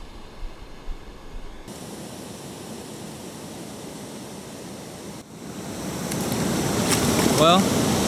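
Steady rush of flowing water, growing louder over the last few seconds, with a man's voice starting near the end.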